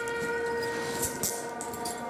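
A steady held tone with overtones, with two short clicks about a second in.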